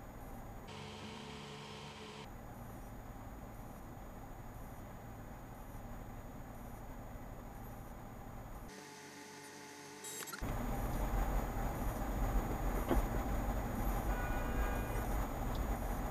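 Low, steady rumble of a car's cabin picked up by a dash cam while the car sits stopped in traffic. About ten seconds in, it cuts to a louder rumble.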